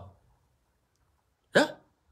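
A pause in a man's speech: the tail of a word, about a second and a half of silence, then one brief vocal sound from him near the end.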